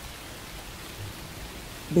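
Steady rain, a soft even hiss.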